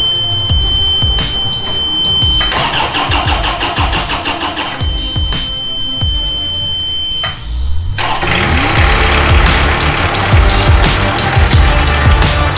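Forklift engine cranking and starting about seven and a half seconds in, its pitch rising as it catches, under music with a steady beat. A steady high-pitched tone sounds in two stretches before the start.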